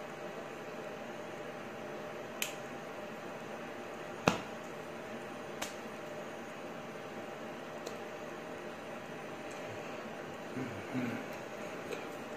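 Steady hiss of room and microphone noise, with a few sharp clicks and taps from hands meeting during sign language. The loudest click comes about four seconds in.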